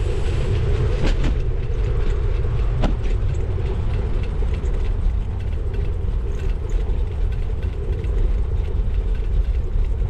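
Steady rumble of bicycle tyres rolling along a paved path, with wind buffeting the camera microphone and a few sharp knocks from bumps about a second and three seconds in.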